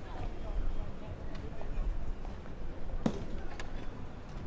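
Street ambience on a pedestrian street: a murmur of passers-by talking, with footsteps clicking on stone paving and a sharper knock about three seconds in.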